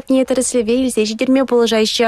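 Speech only: a voice talking without pause, most likely the news report's narration in Chuvash.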